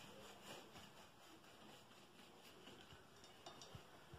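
Near silence as a knife slices slowly through a soft sponge cake, with a few faint clicks about three and a half seconds in.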